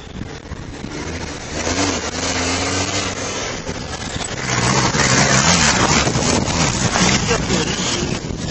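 Rally-raid van's engine running hard under load as it races over a dirt track, the pitch climbing as it accelerates. It gets much louder about halfway through as the van passes close by, with a rush of tyre and dirt noise.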